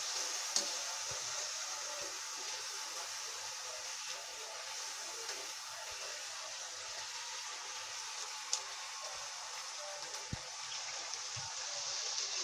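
Fafda strips deep-frying in hot oil in a steel kadai: a steady sizzle, with a few light clicks of the wire skimmer as they are turned in the pan.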